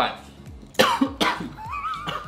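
A man coughing twice in quick succession, short harsh coughs about a second in, while eating a large slice of pizza.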